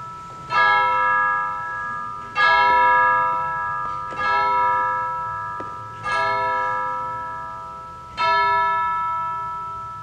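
A single church bell tolling at one pitch, struck five times at an even pace of about one stroke every two seconds, each stroke ringing out and fading before the next.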